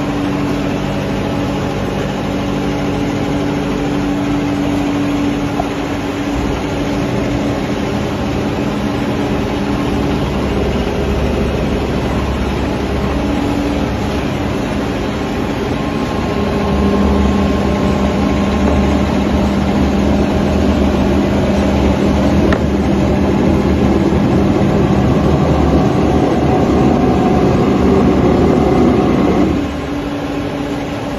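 Shoe-factory machinery running: a steady low hum with a broad machine noise. It grows louder about halfway through and drops suddenly near the end.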